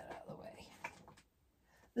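Soft whispered muttering with faint rustling and a small click as someone rummages for an item, fading to near silence after about a second.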